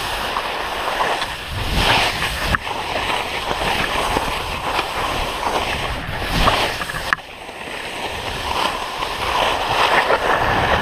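Skis cutting turns down a steep slope of soft spring snow: a rushing hiss that swells and fades with each turn.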